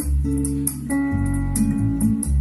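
Recorded guitar-led music with a bass line and a quick, steady cymbal tick, played back through a JBL loudspeaker setup built around a 2395 horn and 2482 compression driver.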